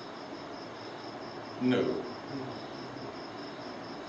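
An insect chirping in a steady, high-pitched, evenly pulsed rhythm. A man's short spoken word cuts in a little before halfway.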